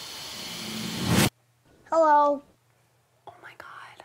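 A rising hiss swells steadily and cuts off abruptly just over a second in. About two seconds in, a short wavering vocal note follows, and faint voice sounds come near the end.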